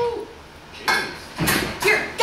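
Three sharp knocks on a wrestling ring's floor, spaced about half a second apart: a wrestler's boots landing as he climbs through the ropes into the ring.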